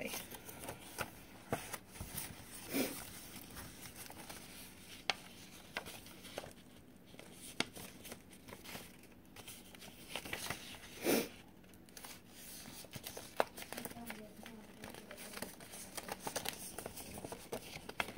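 Paper being handled and folded: irregular rustling and crinkling with small clicks as a sheet of craft paper is creased and turned, with a couple of slightly louder rustles.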